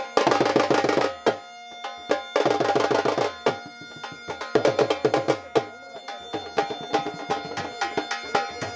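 Dhol drum and mashak (Punjabi bagpipe) playing folk music. The dhol beats three bursts of fast strokes in the first six seconds, then a steadier beat, over the bagpipe's unbroken drone and melody.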